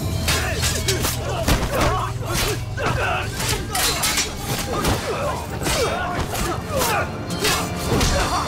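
Staged sword-fight soundtrack: dramatic music over a low drone, with rapid, repeated sharp impacts and blade clashes and short shouts from the fighters.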